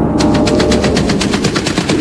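Rapid rattling sound effect of an animated fight: an even train of sharp clicks, about ten a second, over a low rumble.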